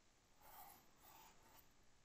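Near silence, with two faint, brief scratching strokes about half a second and a second in: a pen stroke drawing a circle by hand on a writing surface.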